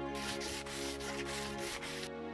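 Wood being hand-sanded, a run of quick scratchy back-and-forth strokes that stops just at the end, over soft background music.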